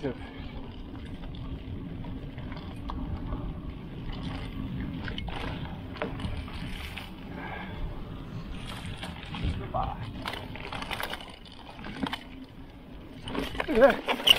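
Mountain bike rolling fast down a dirt trail: tyre noise over dirt and leaf litter with wind rumble on the action camera's mic and small knocks and rattles from the bike. Near the end come louder, sudden knocks as the bike goes down in a crash on wet roots.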